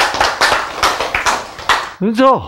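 Hand clapping: a quick run of sharp claps, about five a second and unevenly spaced, growing fainter toward the end.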